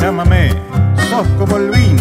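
Chamamé (Argentine litoral folk) music: an instrumental passage between sung lines, with plucked guitars over a regular bass beat and short sliding melodic figures.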